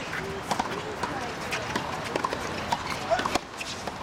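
Tennis ball being hit back and forth on a hard court: sharp knocks of racket strikes and ball bounces, the loudest about three seconds in, over the murmur of voices.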